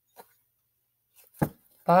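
Tarot card deck being handled: a faint soft tap, then a single sharp knock about one and a half seconds in.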